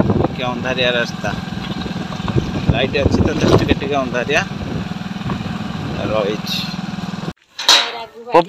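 Motorbike engine running steadily while riding, with talking over it; the engine sound cuts off abruptly about seven seconds in.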